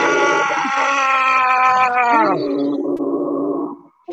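People yelling and growling in deliberate rage, some into towels held over their mouths. A long, held cry drops in pitch about two seconds in and gives way to a lower growl, which stops just before the end.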